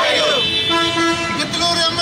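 A group of protesters chanting a slogan together, the call held on long, steady notes that step in pitch.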